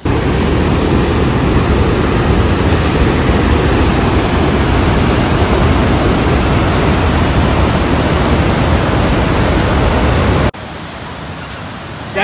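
The Lower Falls of the Yellowstone River rushing over its brink close by: a loud, steady rush of falling water, heaviest in the low end. Near the end it cuts off abruptly to a quieter, steady wash of water.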